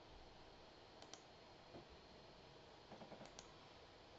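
Faint computer mouse clicks in two quick pairs, one about a second in and one near three seconds in, over near-silent room tone.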